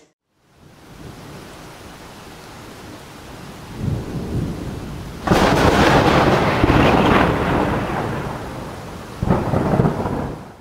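Thunder over a steady hiss of rain: a low rumble builds, then a loud crack about five seconds in rolls on and slowly fades, with a second burst of thunder near the end.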